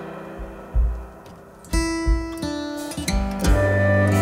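Instrumental passage of a song: plucked guitar notes ringing over low bass notes, thinning out in the middle and filling out again near the end.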